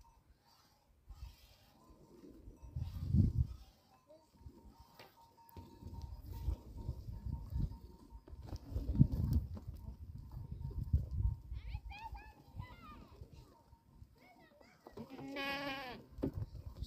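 Goats bleating, with one long, wavering bleat near the end. Under them, a low rumble of wind on the microphone comes and goes.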